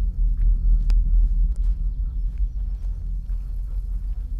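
Deep low rumble, with a few faint clicks over it about one and one and a half seconds in.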